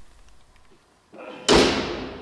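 Bonnet of a Mercedes-AMG E53 Coupe being shut: a single slam about one and a half seconds in, dying away over about a second.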